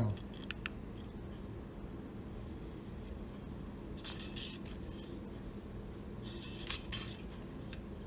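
Faint handling noise from work on a cigar box guitar: two light clicks about half a second in, then soft scraping and rustling around the middle and again near the end, over a low steady background.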